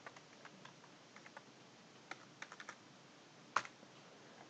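Faint computer keyboard typing: scattered light key clicks, a quick run of them about halfway through and one sharper click near the end.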